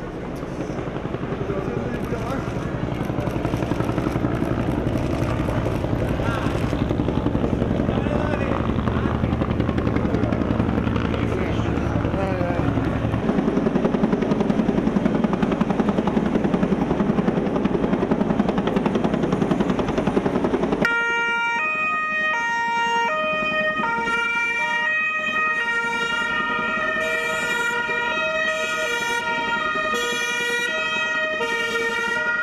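Street noise of a crowd and a vehicle engine. About two-thirds of the way through, an Italian police car's two-tone siren starts, stepping steadily between fixed pitches.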